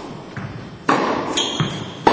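Tennis ball struck by a racket about a second in, a sharp hit ringing on in the large indoor hall, with a fainter knock before it and a brief high squeak just after.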